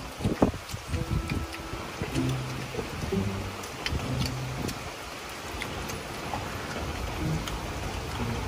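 Steady rain falling, heard as an even hiss, with a few light clicks and short low hums in the first half.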